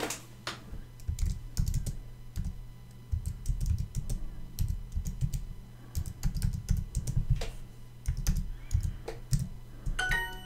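Typing on a computer keyboard: an irregular run of key clicks, each with a dull thud.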